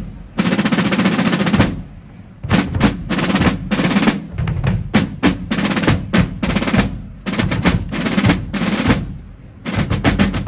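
A marching band's drum line playing rapid snare-drum rolls and cadence patterns in runs, broken by short lulls about two seconds in and near the end.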